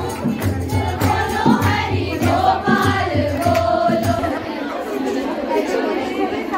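A group of women singing a devotional song together over a steady beat with regular sharp strokes, as from clapping. The singing and beat stop about four seconds in, leaving crowd chatter.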